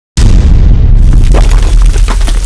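Cinematic boom sound effect for a logo intro: a sudden loud deep impact that hits right at the start and carries on as a heavy low rumble, with crackling debris-like sounds coming in about a second later.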